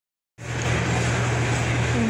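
Steady low machine hum over an even background noise, starting abruptly about a third of a second in.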